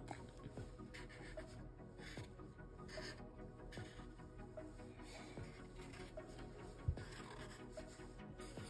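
Felt-tip Sharpie marker rubbing and scratching on paper in short strokes as small shapes are drawn and filled in, over faint background music, with one soft low knock about seven seconds in.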